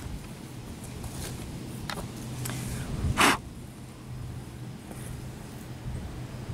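Fingers scraping and crumbling loose soil while pulling a buried coin out of a dug hole, with a few faint clicks and one sharper scrape about three seconds in. A steady low hum runs underneath.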